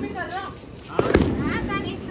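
A firecracker going off with a sharp bang about a second in, its sound trailing away, amid children's voices.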